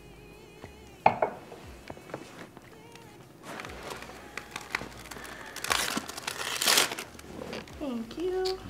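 Sheets of paper being handled and folded: rustling and crinkling, loudest in two bursts about six and seven seconds in, after a single sharp knock about a second in.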